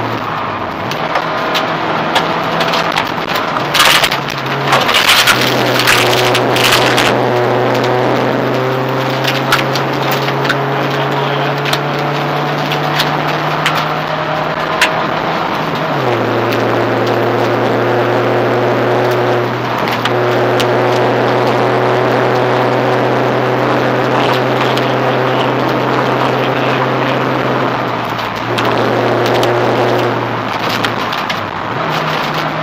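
Rally car engine running under load, heard from inside the cabin over gravel road noise. A few seconds in comes a cluster of sharp crackles, like stones hitting the underside, and about halfway through the revs drop quickly.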